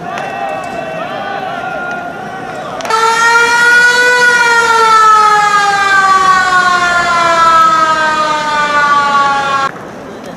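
Koshien Stadium's siren sounding to start the game: a loud, long single tone that starts about three seconds in, rises slightly, then slowly falls in pitch, and cuts off abruptly shortly before the end.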